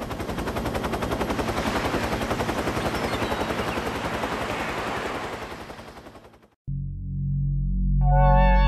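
Rapid snare-drum roll, a fast even stream of strikes that fades away over about six seconds. It breaks off into a moment of silence, and a low bass note of new background music begins near the end.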